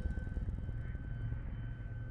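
Low rumble with a rapid flutter, and thin steady high whines held above it: a horror trailer's suspense drone.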